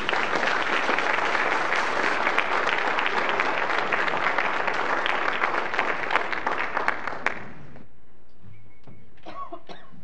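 Congregation applauding, many hands clapping steadily, then stopping about seven seconds in.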